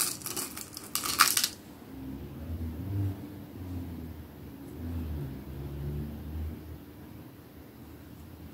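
Small metal clicks and taps as silver beads and a sterling silver head pin are handled and threaded, several in the first second and a half. After that comes a quiet low hum that steps up and down in pitch for a few seconds.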